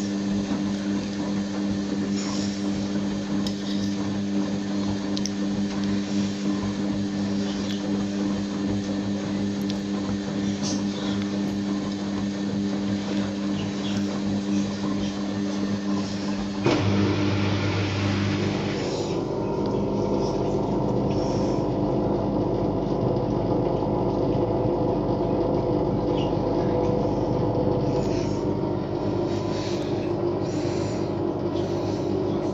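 Bush front-loading washing machine running a wash cycle, its drum motor giving a steady hum as the laundry tumbles in the water. A little over halfway through there is a click, and the hum gives way to a lower, noisier running sound.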